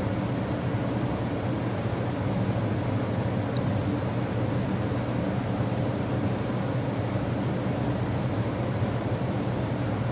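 A steady low hum with a hiss over it, unchanging throughout.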